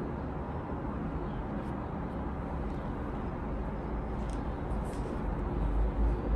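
Steady low background rumble, with a few faint light ticks above it.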